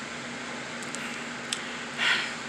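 Steady room noise: an even hiss with a low steady hum underneath, and one small click late on.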